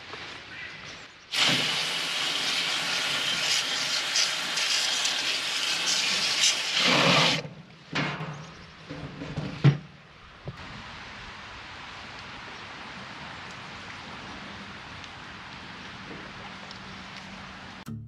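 Water running hard from a tap into a sink for about six seconds while vegetables are rinsed, then a few knocks and a softer steady hiss.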